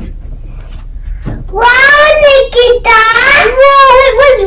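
A child's high voice singing or calling out in long, wavering notes with short breaks, starting about one and a half seconds in after a quieter opening.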